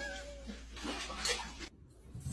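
A husky's short, soft vocal sounds; the sound cuts off just before the end.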